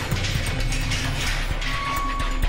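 Background music with rapid clicking and clattering running through it.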